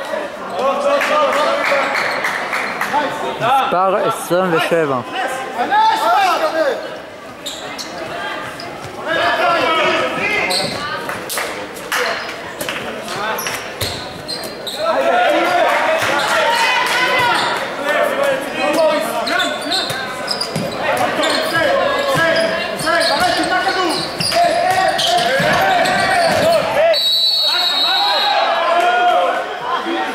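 A handball bouncing and slapping on the wooden court floor again and again, under near-constant shouting from players and spectators in a large hall. A referee's whistle blows for about a second near the end.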